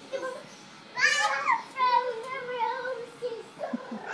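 A young child's high-pitched voice in sing-song, held notes from about a second in, as in a nursery-rhyme game.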